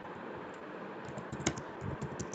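Typing on a computer keyboard: scattered key clicks over a steady faint hiss, with a sharper click about one and a half seconds in.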